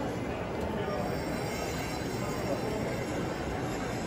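Steady background din of a crowded convention hall: indistinct chatter of many people.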